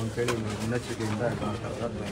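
A man's voice speaking quietly and haltingly, softer than the talk around it.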